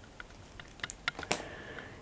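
Light scattered clicks and taps of a cardboard candy box and plastic snack packets being handled on a table, with one sharper click a little past halfway.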